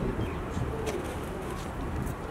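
Pigeons cooing over steady low background rumble.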